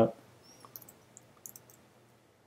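Several faint, irregularly spaced computer mouse clicks.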